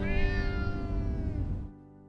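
A cat's drawn-out meow, sliding slightly down in pitch, over end-screen music; both cut off suddenly shortly before the end.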